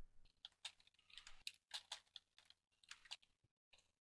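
Faint typing on a computer keyboard: a run of irregular key clicks as a short sentence is typed.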